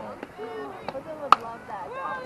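Softball bat hitting the pitched ball: one sharp crack a little past a second in, amid the voices of spectators.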